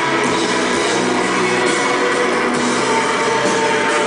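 Live rock band playing through a PA: electric guitar, drum kit and keyboards, loud and steady.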